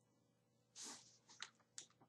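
Near silence broken by a soft, breathy puff and then two or three faint, sharp clicks near the microphone.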